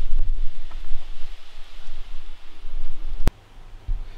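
Wind rumbling on the microphone with faint rustling. A sharp click a little over three seconds in, after which the sound drops to quiet room tone.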